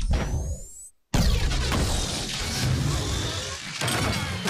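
Sci-fi battle sound effects: a rising whine that cuts off into a moment of silence about a second in, then a loud explosion with a long, heavy rumble.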